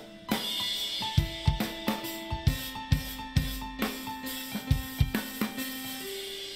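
Band music: a drum kit played with sticks, with snare, bass drum and cymbal hits, over held piano notes.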